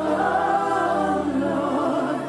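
Gospel worship music: a choir singing one held phrase in several voices over steady low instrumental backing, coming in together at the start and easing off near the end.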